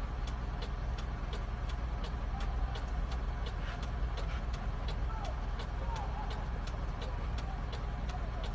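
A motor vehicle's engine running steadily with a low rumble, over a fast, even ticking of several ticks a second.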